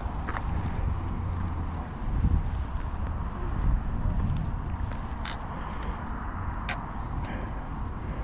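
Wind buffeting the microphone outdoors, a fluctuating low rumble, with a few sharp clicks about five and seven seconds in.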